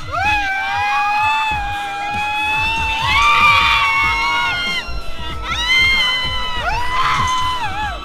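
Riders screaming on a swinging amusement park ride: one long held scream of about four seconds with a second voice joining in its middle, then two shorter screams near the end, over a gusty rumble of wind on the microphone.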